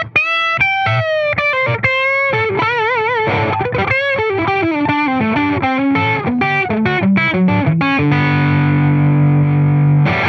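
Electric guitar played through an Xotic AC Booster Comp boost/compressor pedal with a driven tone: single-note lead phrases with string bends and vibrato, a descending run, then a long held ring over the last two seconds.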